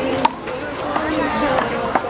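Sharp smacks of a rubber handball in a rally, struck by hand and rebounding off the concrete wall and court: one loud crack about a quarter second in, then lighter hits about a second in and near the end. Spectators' voices chatter behind.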